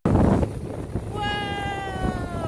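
A young child's long, drawn-out wordless call, starting about a second in, held steady and then sliding down in pitch as it ends, over low wind and water noise from the moving boat.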